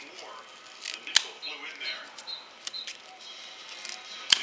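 A small knife blade prying and cutting at tough camouflage tape wrapped around a package, with one sharp click about a second in and a couple of lighter ticks near the end.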